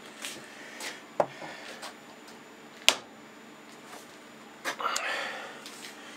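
Light clicks of small metal tools being handled and set down at a stopped lathe, the sharpest about three seconds in, over a faint steady hum. A brief rustling noise follows near the end.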